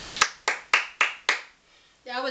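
Hands clapping five times in quick, even succession, about four claps a second.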